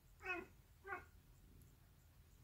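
A cat giving two short, pitched calls about half a second apart, odd little bark-like noises.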